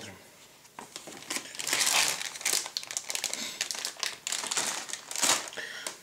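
Clear plastic bag holding plastic model-kit sprues crinkling and rustling as it is handled and moved, loudest about two seconds in and again near five seconds.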